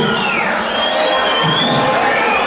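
Concert crowd cheering and shouting, with a long shrill high note held over the din in the second half.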